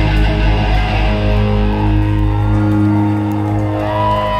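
Ska punk band playing live, with electric guitars, bass and a horn section holding one long sustained chord. The heavy low end drops away a little past halfway through while the higher notes ring on.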